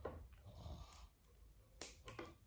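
Near silence with two faint clicks of hands handling a microphone's coiled cable and mini-jack plug, one at the start and one near the end.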